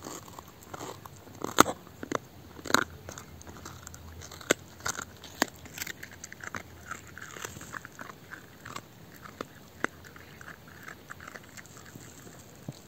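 Dog gnawing and chewing a raw beef brisket rib bone, its teeth cracking on the bone. The loudest cracks come about a second and a half and about three seconds in, followed by lighter, quicker chewing.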